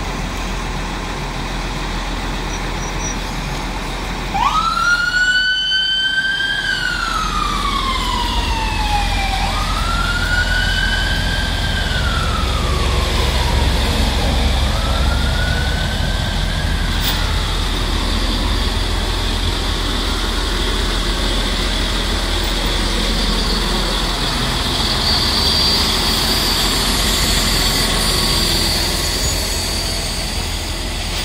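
An emergency vehicle's siren starts suddenly about four seconds in, rising, holding and sliding slowly back down in three long wails, each fainter than the last until it fades away, over a steady low rumble of street traffic.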